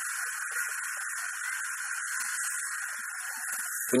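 A steady, high-pitched hiss of background noise that holds an even level throughout, with no distinct event in it.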